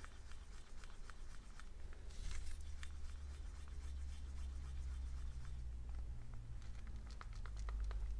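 A wooden craft stick stirring thick acrylic paint in a plastic cup, mixing it smooth: faint scraping and light clicks of the stick against the cup walls. A steady low hum runs underneath.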